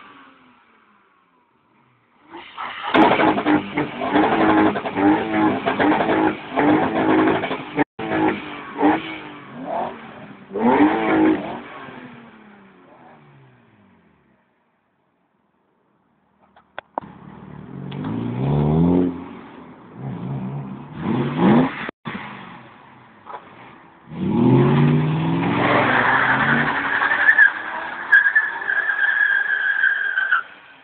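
BMW car engines revved hard in repeated rising and falling bursts, with a pause about halfway. In the last few seconds a BMW E39 5 Series does a burnout: the engine is held high and the tyres squeal steadily.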